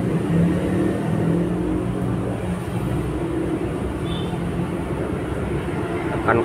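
Steady low engine-like rumble in the background, with a brief faint high tone about four seconds in.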